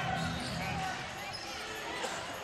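Basketball game sound in an arena: a steady crowd murmur under the play on the court.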